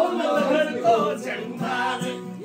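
A group of men singing together in a chorus, with acoustic guitar accompaniment.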